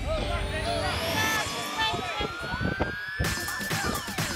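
Soundtrack music with a long siren-like tone that rises slowly in pitch and drops away near the end, mixed with voices and short chirping sounds.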